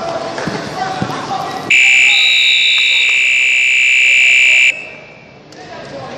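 Arena scoreboard buzzer sounding one loud steady tone for about three seconds, starting a couple of seconds in and cutting off sharply, ending the wrestling bout. Before it, voices in the hall and a few thuds of the wrestlers on the mat.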